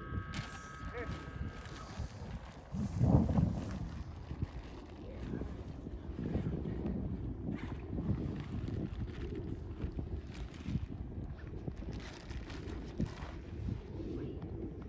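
Wind buffeting the microphone as a low, uneven rumble, with a stronger gust about three seconds in.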